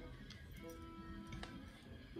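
Faint background music: a few held notes, with a couple of light ticks.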